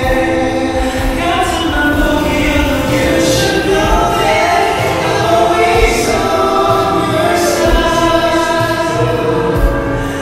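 A slow pop ballad performed live by a band with sung vocals, heard from the stands with the arena's reverberation. The sustained, gliding sung notes are underpinned by occasional drum hits and soft cymbal washes.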